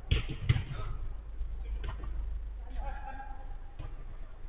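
Footballers' voices and a drawn-out shout on an indoor five-a-side pitch, with two sharp thuds in the first half-second over a steady low hum, heard thin through a security camera's microphone.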